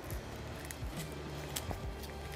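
Quiet background music, with a few soft clicks and rustles as a Velcro strap is worked through a windshield clamp.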